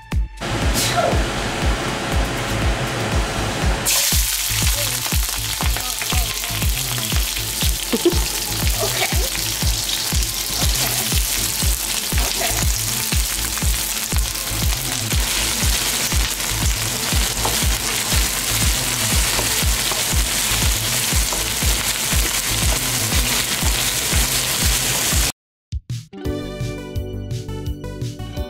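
Long hot peppers, scallions, garlic and ginger frying in hot vegetable oil in a wok: a steady hiss that jumps louder and fuller about four seconds in as the aromatics hit the oil, then sizzles evenly until it cuts off suddenly near the end. A steady music beat runs underneath.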